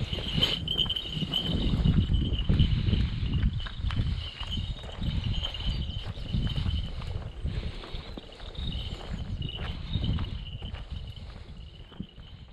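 Footsteps on a paved lane and low bumping rumble on a body-worn camera microphone while walking, with a faint steady high-pitched tone running behind.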